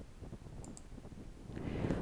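Quiet pause in a newsreader's delivery: low room noise with a few faint clicks, then a soft in-breath in the last half-second before she speaks again.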